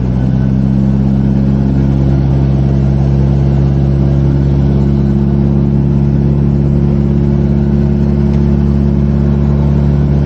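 Car engine pulling steadily up a steep mountain pass: one loud, even engine note that holds at a constant pitch under load.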